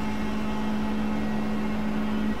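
Experimental noise-drone music: a steady held low hum with a few faint higher tones over a hissing wash of noise, with no beat or melody.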